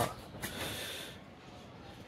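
A short breath hissing close to the microphone about half a second in, lasting under a second, with low room noise either side.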